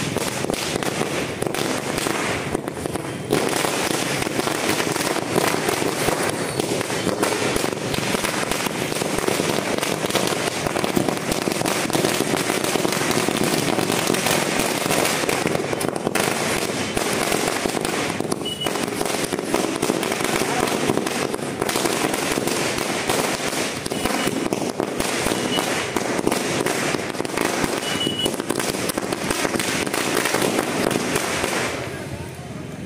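Firecrackers bursting on a street, a dense, rapid run of bangs and crackles that goes on without a break.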